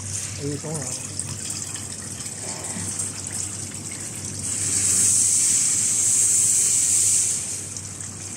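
Steady hum of a chain link fence making machine in the workshop, with a loud hiss rising about four and a half seconds in and fading about three seconds later.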